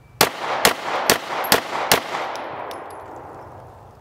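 Five pistol shots in an even string, about two a second, fired from low ready at a card-sized target, with the report echoing and fading for about two seconds after the last shot.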